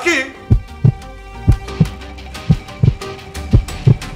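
A heartbeat sound effect in the background score: paired low thumps about once a second, over a held music drone.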